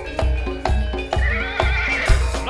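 Live jaranan gamelan accompaniment: deep drum strokes about two a second over held metallophone and gong notes, with a wavering high melody line coming in about a second in.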